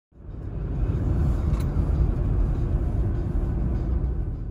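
Car interior road noise while driving: a steady low rumble of engine and tyres, fading in over the first second.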